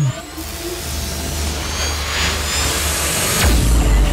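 Electronic outro sting: a rising swell of whooshing noise over a low rumble, climaxing in a deep boom about three and a half seconds in.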